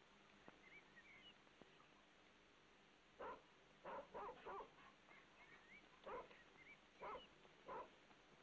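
A dog barking faintly on an old film soundtrack: about seven short barks, several in a quick run of three about four seconds in.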